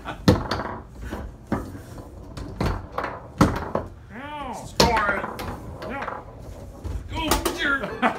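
Foosball being played on a Tornado table: rods and plastic figures striking the ball and the hard table surface, a series of sharp knocks at irregular intervals.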